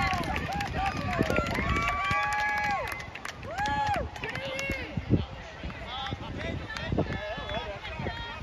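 High-pitched shouting voices at a youth soccer game: several long held calls that rise and fall in pitch, with shorter calls around them. A single sharp knock about five seconds in.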